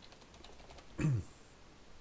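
A few faint computer keyboard key taps while login details are typed, then about a second in a brief low vocal 'mm' that falls in pitch.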